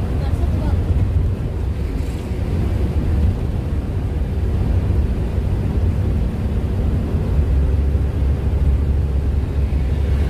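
Steady low rumble of a van driving at road speed, its engine and tyre noise heard from inside the cabin.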